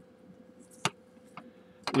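Hard plastic action figure being handled: one sharp click just under a second in and a fainter one about half a second later.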